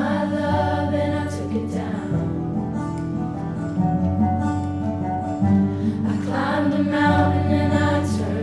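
A girls' high school choir singing a slow song in parts, with long held notes, accompanied by piano.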